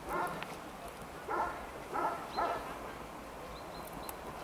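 A dog barking, four short barks over the first two and a half seconds: one right at the start, then three close together.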